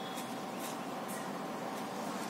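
Steady background noise with a faint constant hum and no distinct event.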